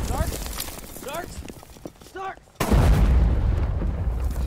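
The low rumble of an explosion dies away while a man gives three short shouts. Then a second loud explosion hits suddenly about two and a half seconds in, and its rumble trails off.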